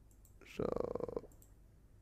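A few faint computer mouse clicks while navigating software, with a drawn-out spoken 'So' in the middle.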